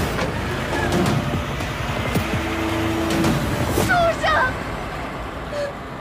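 A minivan's engine running as it pulls away, fading toward the end, with a woman's short pained cries about four seconds in.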